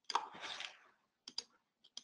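A few small, sharp computer clicks as the presentation slide is advanced. There is one at the start, two in quick succession past the middle and one near the end, with a short soft rustle just after the first.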